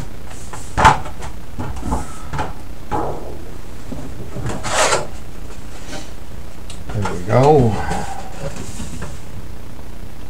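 Scattered knocks, taps and a brief scraping rustle as a bent sheet workpiece is handled at a workbench, the sharpest knock about a second in. A short hummed voice sound rises and falls about seven and a half seconds in.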